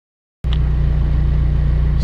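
Toyota AE86's engine running, heard from inside the cabin as a steady low drone that cuts in suddenly about half a second in.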